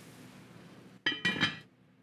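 Lid of an enamelled cast-iron Dutch oven set down on the pot, a single clink that rings briefly about a second in.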